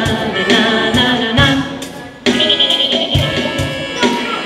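Live pop music: group singing over accompaniment with a steady low drum beat. The sound dips and comes back in suddenly a little past halfway.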